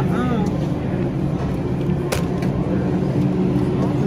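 Supermarket ambience: a steady low machine hum, with faint voices near the start and a single sharp click about two seconds in.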